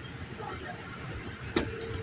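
Outdoor background: a steady low rumble with faint voices, and one sharp click about a second and a half in.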